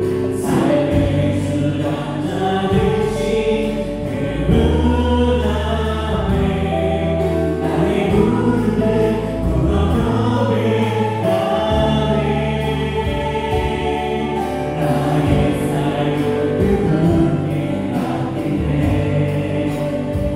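Church praise band playing a gospel song: electric guitar, bass guitar, keyboards and drums, with a group of voices singing together over them.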